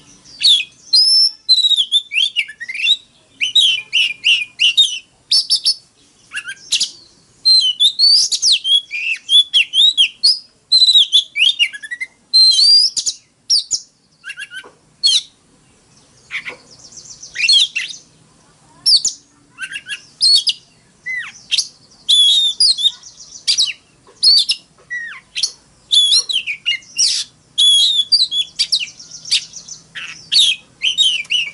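Oriental magpie-robin singing: a long run of loud, rapidly varied whistled phrases and trills in quick bursts with short pauses, and a brief lull about halfway through.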